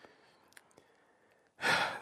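Near silence with a few faint ticks, then, about one and a half seconds in, a man's loud breathy sigh just before he starts speaking.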